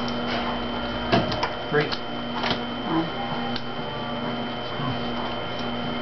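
Light clicks and taps of playing cards and pegs on a wooden table during a cribbage hand, a handful of them close together in the first half, over a steady high-pitched whine.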